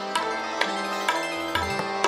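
Live Kathak accompaniment: tabla strokes over a melodic instrument holding sustained notes.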